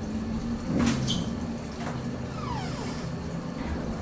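Small portable washing machine running a wash cycle, a steady low hum with water sloshing. A short knock comes about a second in, and a brief falling whine about halfway through.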